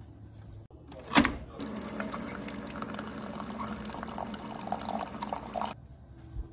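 A single sharp knock about a second in, then coffee pouring into a mug for about four seconds as a steady liquid stream that starts and stops abruptly.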